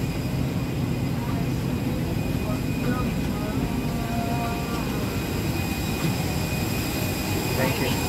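Airliner cabin noise after landing: a steady low hum with a few thin constant tones above it, and faint indistinct passenger voices in the background.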